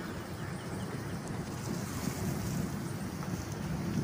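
Steady low rushing of wind buffeting the microphone outdoors, uneven and strongest in the low end.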